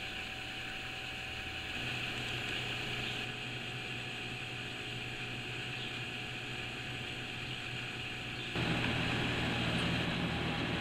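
Steady low hum and hiss of room background noise, with no distinct events. It steps up a little in level shortly before the end.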